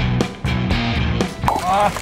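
Background rock music with a steady beat, giving way to people's voices near the end.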